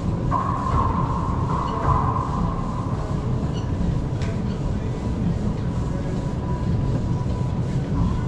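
Racquetball play on an enclosed court under a steady low rumble: the ball is struck by a racquet near the start and a single sharp hit comes about four seconds in.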